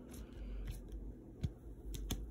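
A few faint clicks and taps of plastic trading-card holders being handled and set down, one about a second and a half in and another near the end.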